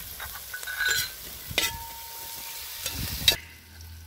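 Sliced vegetables stir-frying in a large aluminium pan: a steady sizzle with a perforated metal skimmer ladle scraping and clinking against the pan several times. The sizzle cuts off abruptly near the end.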